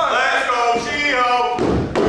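A single heavy thud of a wrestler's strike landing, near the end, over shouting voices.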